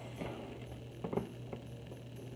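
A cardboard box being picked up and handled, giving a few faint, short knocks and scrapes over a steady low hum.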